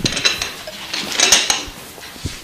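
Dishes and cutlery clinking and clattering, with a few sharp ringing clinks about a quarter second in and again just after one second.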